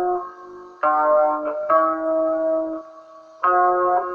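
Guitar playing slow, ringing single notes in a free-jazz blues style. There is a short gap, a note about a second in, a longer held note, and a fresh note near the end.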